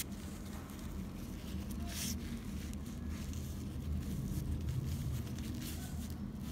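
Faint rubbing and rustling of a paper towel wiping a grainy rice-powder scrub off skin, with one brief louder rustle about two seconds in, over a steady low hum.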